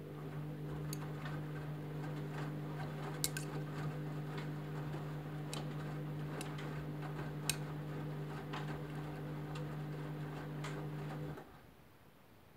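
Candy front-loading washing machine tumbling a wet load during a rinse: a steady motor hum with water sloshing and scattered clicks from the drum. The hum cuts off suddenly about a second before the end.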